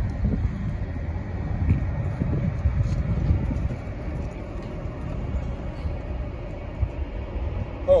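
A transit bus running, with a low steady rumble and faint voices in the first few seconds.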